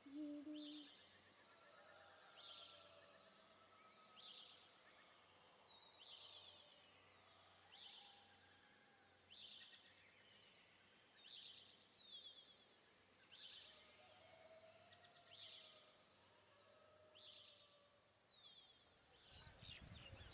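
A bird calling faintly and repeatedly outdoors, a short high call roughly every two seconds, over a thin steady high tone.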